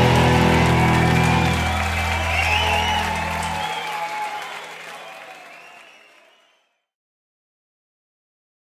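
A live rock band's final chord ringing out over audience applause and cheering; the chord stops about three and a half seconds in, and the applause fades out to silence soon after.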